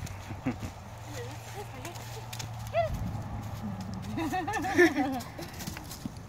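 A dog moving about and sniffing on dry leaf litter, its steps making scattered small clicks and rustles, with people laughing near the end.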